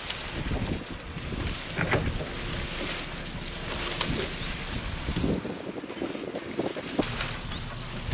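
Cut branches and conifer greenery rustling and crackling as they are dragged off a trailer and thrown onto a brush pile, with wind rumbling on the microphone. A small bird chirps repeatedly, high and faint, over it.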